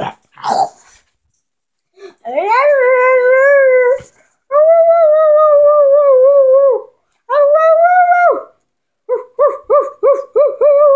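A dog howling: a rising howl about two seconds in, then two more long, wavering howls, and near the end a run of short whimpering yelps, about three a second.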